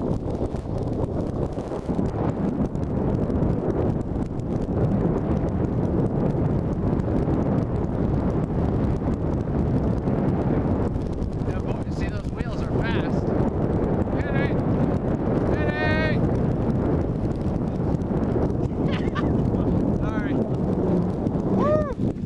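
Wind buffeting the microphone and longboard wheels rolling fast on asphalt, a loud steady rushing noise. From about twelve seconds in, a few short, high, wavering voiced cries sound over it.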